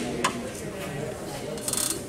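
A single sharp click, then near the end a short, fast rattle of clicks, over a murmur of voices in the hall.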